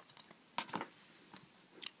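Faint handling of a pencil and a clear plastic ruler on a sheet of paper: a few light taps and rustles, a small cluster just over half a second in and a single tick near the end.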